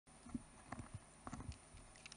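Faint footsteps on a stage floor, a handful of light, irregular knocks over the first second and a half, heard through the hall's microphones.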